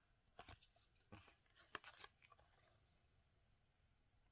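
Near silence, with a few faint, brief scrapes and clicks in the first half as trading cards are handled in the fingers.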